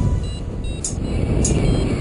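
Wind rushing over a camera microphone in flight under a paraglider, a loud low rumble, with faint background music.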